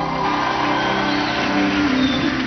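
The last held notes of a live song with its backing band, under an even wash of audience cheering that rises a moment in.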